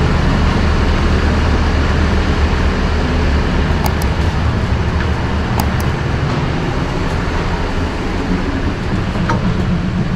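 Steady low rumble of a stationary passenger train idling at the platform, with a few faint clicks about four and six seconds in.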